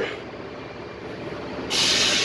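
Low steady background hum, then near the end a sudden loud, steady hiss as the sand silo's loading spout starts up, air and sand rushing through it.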